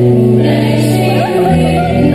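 Several voices singing a sentimental song together, accompanied by an electric guitar.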